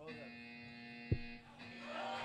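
A steady electrical buzz with a low hum under it, and a single sharp knock about a second in.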